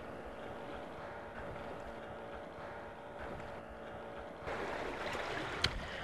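Wind and sea water washing against rocks, with a faint steady hum under it for the first four and a half seconds. Then the noise turns brighter, and a short click comes about a second later.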